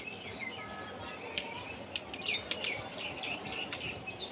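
Small birds chirping repeatedly in the background, with a few light taps and scrapes of chalk on a blackboard.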